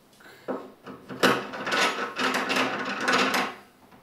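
A thin threaded rod being screwed by hand into the corner fitting of a terrarium base: a knock about half a second in, then a scraping, rattling rasp for about two seconds as the rod is twisted home.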